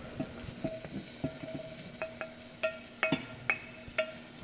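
Apple chunks being scraped with a spoon off a ceramic plate into a stainless steel saucepan of hot butter: a string of light clinks and taps, each ringing briefly, over a faint sizzle.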